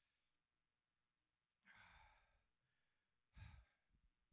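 Near silence, broken twice by a man breathing into a close handheld microphone: a soft sigh-like exhale about two seconds in and a shorter breath near the end.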